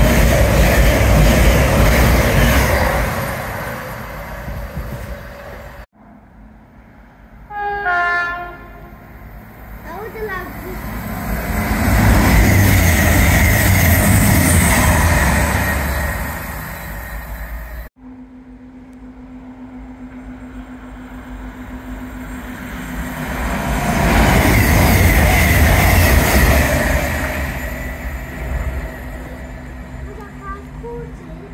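Express passenger trains running through a station at speed, one after another: each passes as a loud rush of wheel and rail noise that swells and fades, the first fading out in the opening seconds, the second loudest about twelve to sixteen seconds in, the third about twenty-four to twenty-seven seconds in. A train horn sounds briefly about eight seconds in as the second train approaches, and a steady hum lies under the third.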